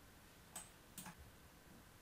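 Near silence: room tone with two faint, short clicks about half a second apart.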